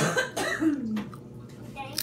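A boy coughs once, then makes a short vocal sound that falls in pitch.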